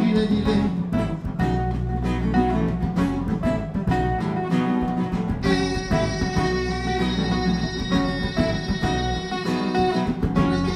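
Live band music: an electric bass and a strummed acoustic-electric guitar playing a song together, with a steady bass line under the guitar. About halfway in, a fuller layer of held notes joins in.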